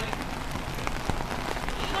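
Steady rain falling on the pool and patio, an even hiss with a few scattered ticks of drops.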